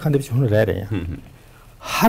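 Only a man's speech: a short, low-pitched stretch of talk in the first second, a pause, then an audible intake of breath near the end as talking resumes.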